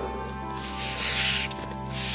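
Background music with sustained, steady notes. About half a second in, a soft hiss rises over it for nearly a second.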